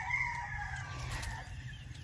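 A rooster crowing, faint, the call trailing off with a slightly falling pitch and fading out about a second and a half in.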